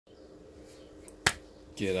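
A single sharp click or snap about a second in, over a faint steady hum, followed by a man's voice starting to speak near the end.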